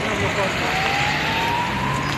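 An emergency vehicle's siren in a slow wail: its pitch bottoms out about half a second in, then rises steadily. Voices and street bustle run underneath.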